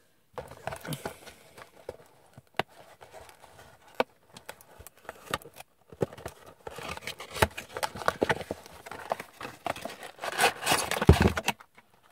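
A cardboard toy box being handled and opened by hand: irregular taps, scrapes and crinkles of cardboard and plastic packaging, busier in the second half.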